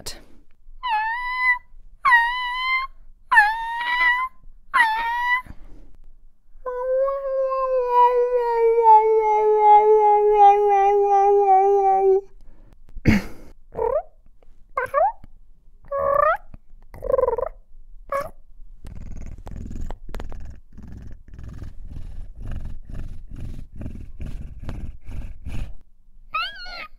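A woman imitating a cat with her voice: four short meows, then one long, slowly falling yowl, then a run of short, varied mews. Over the last several seconds comes a low rhythmic purr, about two pulses a second.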